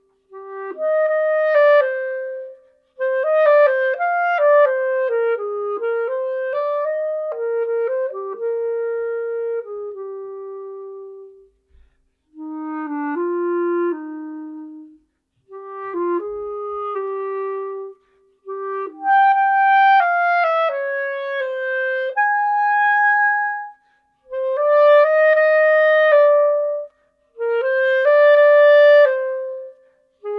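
Solo Buffet wooden B-flat clarinet played unaccompanied: melodic phrases of single notes, with short pauses between phrases.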